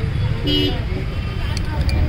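Steady low rumble of outdoor background noise, with one short pitched voice-like sound about half a second in.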